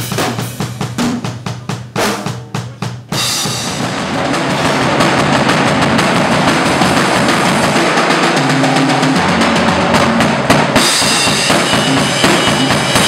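Drum kit played live: separate drum strikes for about three seconds, then a sudden jump into louder, dense playing with cymbals washing over rapid drumming.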